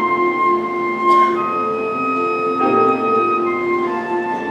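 A flute plays a slow melody of long held notes over soft piano accompaniment. The harmony shifts to a new chord about two and a half seconds in, and there is a brief click about a second in.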